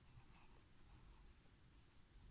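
Pencil writing on a paper workbook page: faint, quick scratching strokes as a word is written out.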